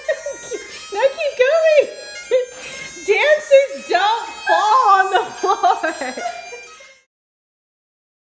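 Hearty laughter from more than one person over bagpipe music, coming in loud bursts. All sound cuts off abruptly about seven seconds in.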